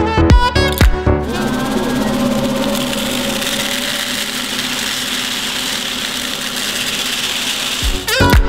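Music for about the first second, then a vacuum cleaner running steadily as its plastic pipe sucks ceramic media out of the finishing machine's bowl, a steady hiss of rushing air over the motor.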